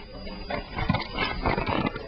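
Handling noise: a few soft bumps and knocks of a hand touching and adjusting the webcam, close to its microphone.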